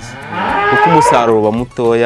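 A cow mooing once, a loud drawn-out call lasting a little over a second.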